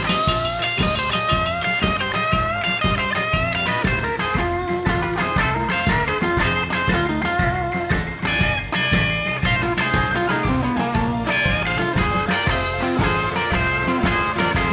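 A live rhythm-and-blues band playing an instrumental break, with a semi-hollow electric guitar taking a single-note solo over a steady beat from piano, bass and drums.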